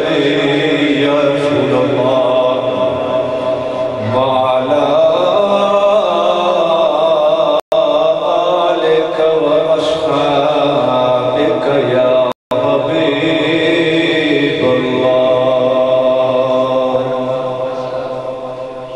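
A man's voice chanting an Islamic devotional recitation in long, drawn-out melodic phrases into a microphone, salutations on the Prophet. The sound cuts out briefly twice, around the middle, and fades toward the end.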